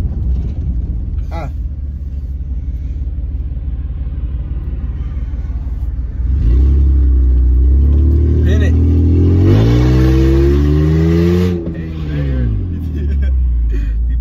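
Minivan engine heard from inside the cabin: a steady low rumble while driving, then about halfway through the engine note jumps louder and climbs steadily under acceleration for several seconds before falling away as it eases off near the end.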